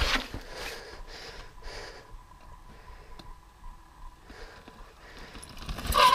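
Quiet outdoor ambience with a few short breathy sniffs in the first two seconds. A noisy rush builds near the end as a mountain bike rolls down over sandstone.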